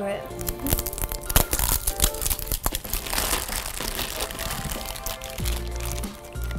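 Small cardboard blind boxes being torn open and the figures' wrapping crinkled and pulled off by hand, a dense run of irregular crackles and tearing sounds.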